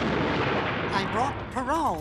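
A cartoon thunderclap, a loud crash of noise that rumbles and fades about a second in, over a low steady musical drone. A voice follows in the second half.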